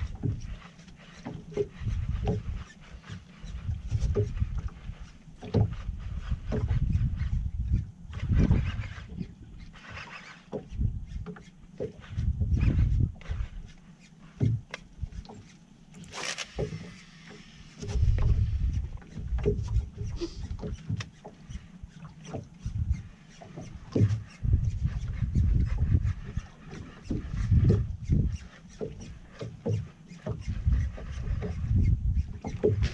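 Wind buffeting the microphone in irregular gusts and water slapping against the hull of a small open fishing boat, with scattered sharp clicks and knocks and one brief loud splash-like burst about halfway through.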